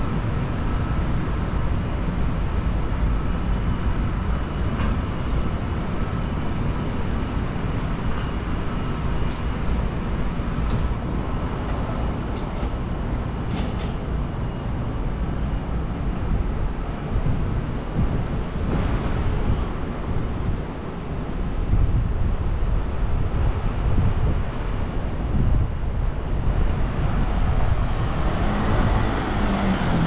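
City street traffic: a steady rumble of passing vehicles. Near the end, one passing engine falls in pitch as it goes by.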